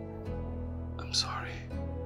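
Soft background music of held chords that change near the start and near the end, with a short breathy vocal sound about a second in.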